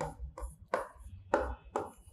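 A handful of short scratching strokes of writing, quick and irregular, spaced through the two seconds.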